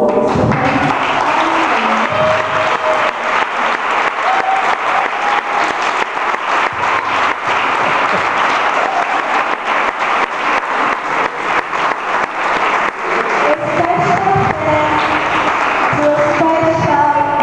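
Many people clapping their hands in a large hall, a dense patter of claps that runs steadily, with a faint tune held over it at times.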